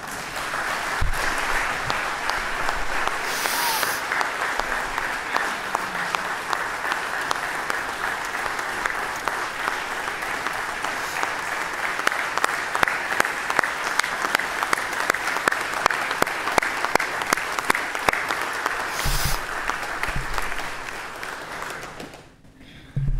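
A roomful of people applauding: many hands clapping in a steady, sustained ovation that dies away near the end.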